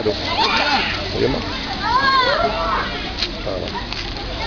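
Children's voices talking and calling out, the words unclear, with one high voice rising and falling about two seconds in.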